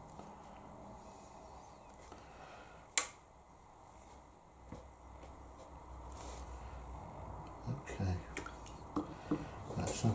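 Quiet room tone with a single sharp click about three seconds in, and a few faint short sounds near the end.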